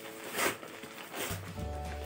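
Background music with steady held notes; a deep bass line comes in just over a second in. There is a short rustle of a paper bag being opened about half a second in.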